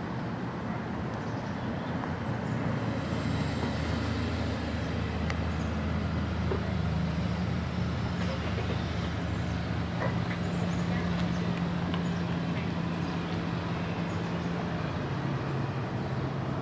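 A motor vehicle's engine running close by, a steady low hum that grows louder about three seconds in, holds one pitch, then drops lower near the end.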